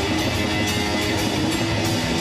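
A doom/death metal band playing live: electric guitars and bass holding heavy notes over drums, with cymbal and drum hits throughout. The sound is loud and dense.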